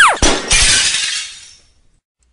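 Cartoon sound effect of glass shattering: a quick falling tone, then a loud crash of breaking glass that fades out over about a second.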